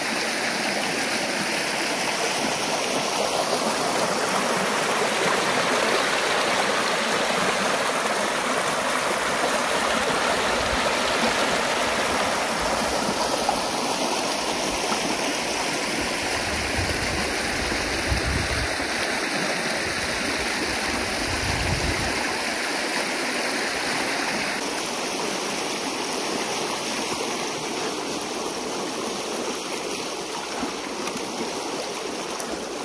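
Water rushing steadily through a freshly opened breach in a peat beaver dam, the pent-up pond draining fast.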